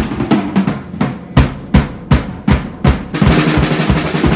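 Acoustic drum kit played solo, close-miked: a steady pattern of drum strikes about three a second, breaking into a quick dense fill near the end.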